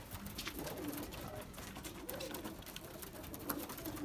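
Domestic pigeons cooing softly, with scattered light clicks and taps through it.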